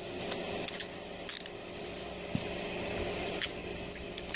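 Metal handcuffs being ratcheted shut on a man's wrists: a scatter of short, sharp metallic clicks and jingles over a steady low hum.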